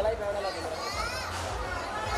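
Guests talking over one another, with high-pitched voices among them, over a low rumble.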